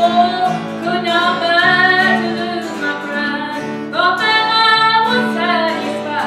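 A woman singing, accompanying herself on a steadily strummed acoustic guitar.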